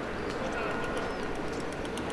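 City street ambience: a steady hum of traffic with indistinct voices and birds calling, their short chirps high above the hum.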